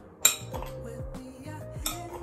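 Metal spoon striking a glass bowl: a sharp clink about a quarter second in and a second, weaker one near the end. Background music runs underneath.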